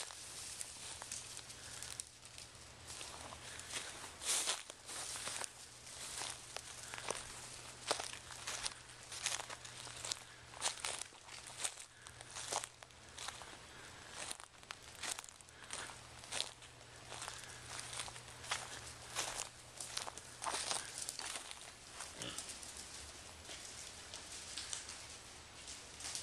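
Movement through dry leaf litter: irregular crunching and rustling crackles, about one or two a second, over a steady low hum that fades near the end.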